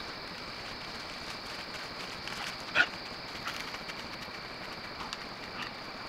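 Trail camera's own microphone picking up a steady high hiss, with a single short, loud animal call about three seconds in and a few fainter short sounds around it.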